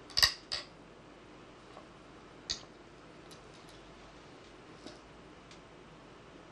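Go stones clacking as they are handled on a large demonstration board: two sharp clicks right at the start, another about two and a half seconds in, then a few faint ticks.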